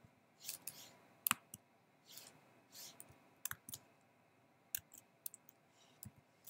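Faint, scattered keystrokes on a computer keyboard, a few taps at a time with pauses, as a search is typed in. A few short, soft hisses fall between the taps.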